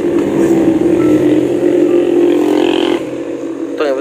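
A motor vehicle engine running steadily, loud and close, its drone dropping away about three seconds in.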